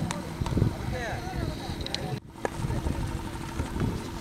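Distant voices of players and onlookers calling out across an open ground, over low wind rumble on the microphone and a faint steady hum. The sound drops out for an instant a little past halfway.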